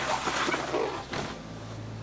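Paper towel rustling as a plastic pouring cup is handled and wiped, for about a second, then fading.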